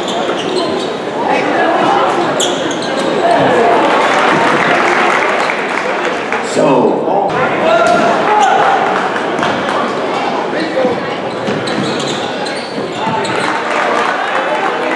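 Live gym sound of a basketball game: a basketball bouncing on the hardwood court with short sharp knocks, over steady voices and crowd chatter echoing in a large hall.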